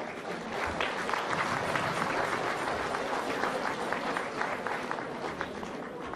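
Audience applauding, building over the first second and easing off toward the end.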